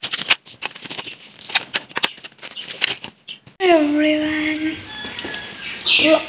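Rapid, irregular clicking and rustling of objects being handled for about three and a half seconds. An abrupt cut then brings in a person's voice with a falling, then held, pitch.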